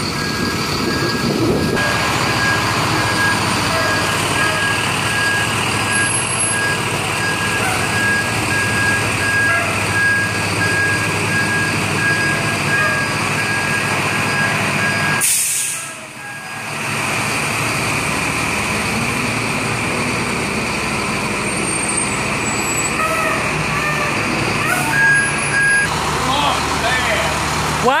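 School bus running with its reversing alarm beeping steadily as it backs up; the beeping stops about halfway through and sounds again briefly near the end.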